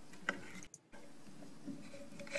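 Faint handling of pliers on an opened doorbell chime's plunger mechanism, with a sharp click about a quarter second in and a few lighter ticks later.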